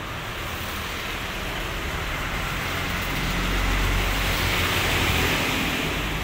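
A road vehicle passing by, its engine and tyre noise with a low rumble swelling to a peak about two-thirds of the way through, then fading.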